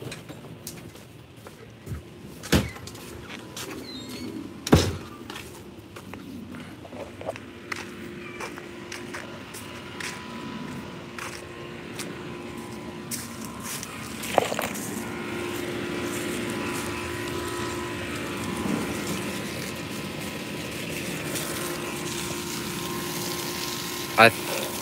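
A door knocks twice sharply within the first five seconds. About halfway through, a garden hose begins running water onto the mulched soil, a steady rush with a faint hum that lasts to the end.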